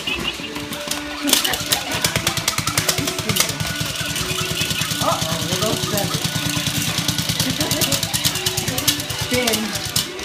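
A battery-powered dog toy rattling rapidly over a tinny electronic tune. The rattle starts about a second in and stops just before the end.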